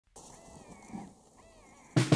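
Faint recorded animal calls from an electronic game caller: two wavering, whistled cries, with a low thump between them. A loud musical hit comes in at the very end.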